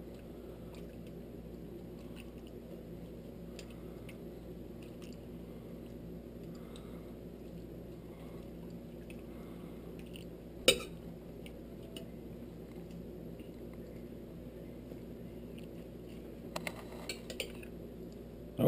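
A metal spoon scooping stew from a skillet into a ceramic bowl: faint scrapes and small wet sounds over a steady low hum, with one sharp clink of the spoon about ten and a half seconds in.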